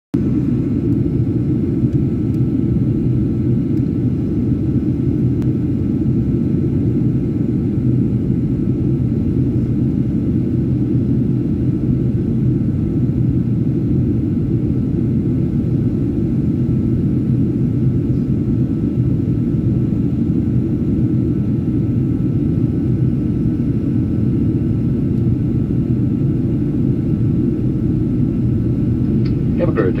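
Steady, low cabin noise of a Boeing 737 jet airliner in flight on its descent: engine and airflow noise heard from inside the cabin, with a faint steady whine above it.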